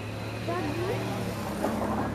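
Car engine idling, a steady low hum, with faint voices of people around it.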